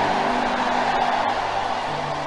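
Sustained background music chords held between the preaching, under a steady wash of many voices from the praying congregation, easing slightly in level.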